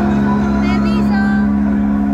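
A live concert PA holds a low synth chord, the intro of a song, with crowd voices and a short shout about a second in.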